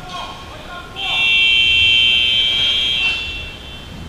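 Arena scoreboard buzzer sounding once: a steady, high-pitched tone that starts suddenly about a second in and stops after about two seconds.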